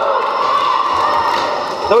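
Crowd of roller derby spectators, a steady mix of many voices chattering and cheering.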